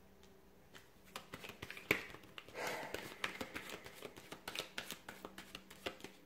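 A deck of tarot cards being handled and shuffled by hand: quiet clicks and flicks of the cards starting about a second in, with one sharp snap about two seconds in and a short rustle of cards just after it.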